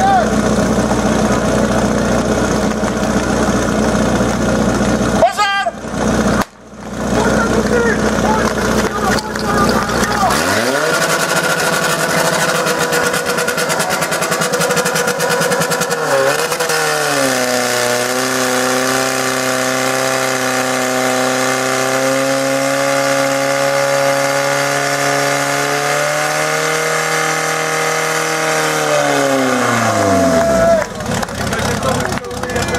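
Portable fire pump's engine running at idle, then opened up about ten seconds in and again around sixteen seconds, held at high, steady revs while it drives water through the attack hoses, and throttled down near the end.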